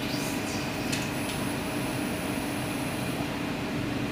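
Steady mechanical hum and whir of laboratory machinery, with a faint steady tone over it. A couple of faint ticks come about a second in.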